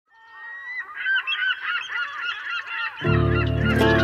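Several seagulls calling over one another, fading in as a harbour sound effect. About three seconds in, the song's band music comes in suddenly with bass under the calls.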